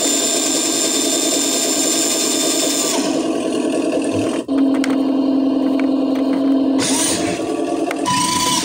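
Electric drive motor and gearing of a 1:16-scale RC Freightliner Cascadia tractor spinning its driven rear axle: a whine that rises and holds for about three seconds, then stops. A single click follows, then the truck's built-in engine-running sound effect plays as a steady hum, and a short second burst of motor whine comes near the end.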